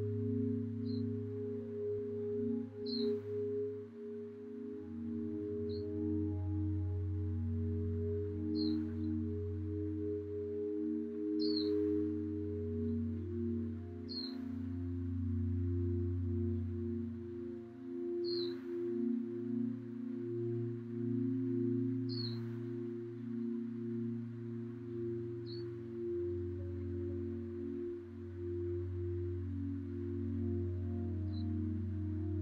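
Slow, calm relaxation music made of held, wavering low drone tones that shift gradually, with a short high chirp about every three seconds.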